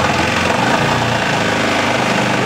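Arctic Cat Prowler 700 side-by-side's single-cylinder engine idling steadily.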